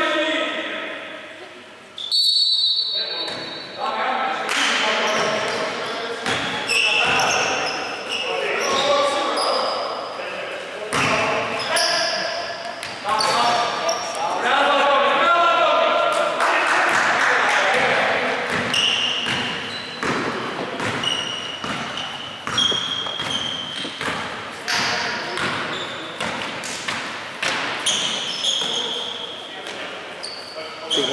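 Basketball being dribbled on a wooden gym floor with players' footfalls, many sharp impacts through the whole stretch, mixed with players' voices calling out, echoing in a large hall.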